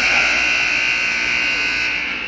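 Ice rink scoreboard buzzer sounding one long, steady blast, signalling the end of the period.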